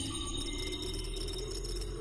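Electronic intro sound design: fast-flickering high-pitched beeping tones over a steady low drone.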